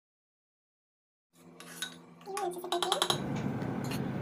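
Silence for over a second, then a quick run of light clicks and clinks from a spoon against the bowl while curd is whisked, followed by a low steady background hum.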